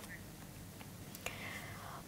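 Faint background hiss, with a small click a little past a second in and a soft breath-like rustle after it.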